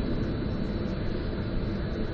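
Steady outdoor background rumble with no distinct events, carrying a faint steady high-pitched whine.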